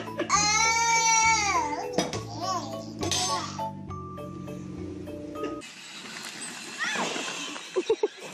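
Baby's long, high-pitched squeal that rises and falls, followed by a few shorter squeals, over background music. A little past halfway the music stops and outdoor noise takes over.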